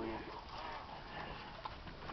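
Faint, steady background noise aboard a boat at sea, with one small tick near the end.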